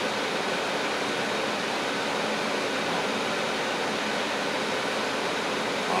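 Steady, even background hiss, unchanging throughout, with no distinct strokes or clicks standing out.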